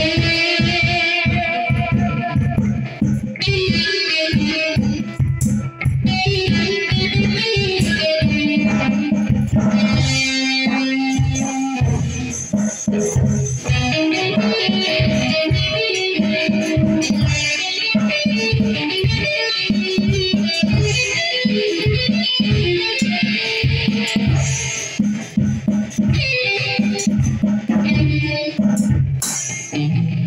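Electric guitar and an Alesis electronic drum kit playing together in a live rock jam, a steady driving beat under the guitar's riffs and held notes. The drums drop back briefly about ten seconds in, then pick up again.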